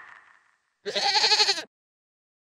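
A goat bleating once, a wavering call a little under a second long, used as a sound effect in a logo sting.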